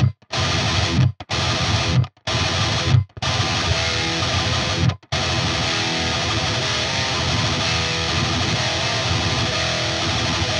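Distorted electric guitar riff, alternate-picked with down and up strokes, mixing palm-muted and open notes, from an ESP KS-M6 with Fishman Fluence Modern humbuckers. The first five seconds come in about four short bursts, each cut off sharply about a second apart, before the picking runs on without a break.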